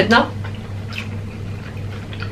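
Soft mouth sounds of eating with the hands: chewing and small wet clicks and smacks, over a steady low hum.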